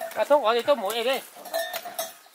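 A goat bleating once, one long call with a quavering, wavering pitch.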